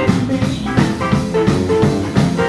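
A live blues band playing: electric guitar over drums and bass guitar.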